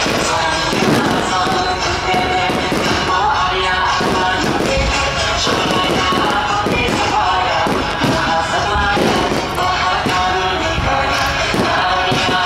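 Aerial firework shells bursting in repeated bangs and crackles, over continuous loud music.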